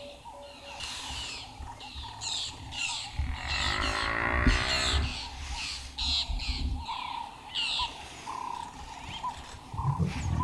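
A large animal gives one long, low, rasping call lasting nearly two seconds, about three seconds in, as lions grapple with a Cape buffalo bull. Short, high bird chirps come and go throughout.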